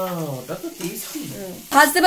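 Mostly speech: a man's voice at the start, then a woman talking near the end over a metal spatula stirring moong dal in a steel kadai.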